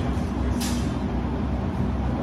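Steady low rumble of a large hall's background noise, with one short hissing scuff about half a second in as the longsword fencers move on the concrete floor.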